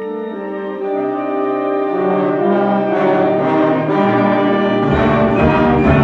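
Concert wind band playing sustained chords led by the brass, growing steadily louder and fuller as more instruments join, with a deep bass layer coming in near the end.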